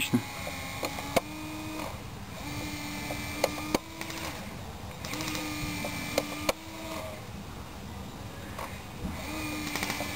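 A small electric motor and gearbox in an airsoft RC battle tank whirring in four separate runs of about a second and a half each, with sharp clicks as the runs start and stop.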